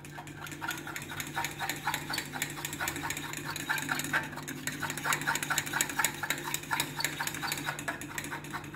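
A metal spoon stirring melted chocolate and cream in a small glass bowl, clicking and scraping against the glass in a fast, steady rhythm. A low steady hum sits underneath.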